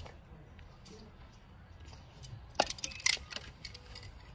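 Low room quiet, then a short cluster of four or five sharp clicks and knocks about two and a half seconds in, from handling.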